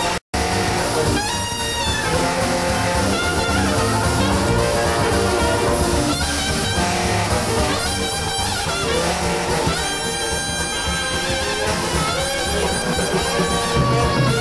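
A live New Orleans-style traditional jazz band playing together: cornet, trombone and saxophone over string bass and drums. The sound drops out completely for a moment just after the start.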